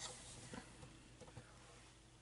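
Near silence, with a few faint, soft ticks and rustles in the first second and a half.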